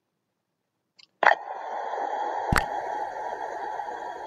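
Dead silence, then a steady hiss of background noise cuts in abruptly with a click a little over a second in, with a single sharp knock about halfway through.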